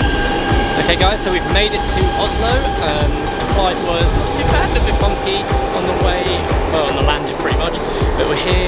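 A man talking over background music with a steady beat.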